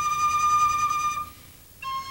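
Background music: a solo flute holds a long note that fades out just over a second in. After a brief breath it starts a new, slightly lower note near the end.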